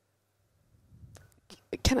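A pause in conversation: near silence, then a faint breath with a small click about a second in, and a woman starts speaking near the end.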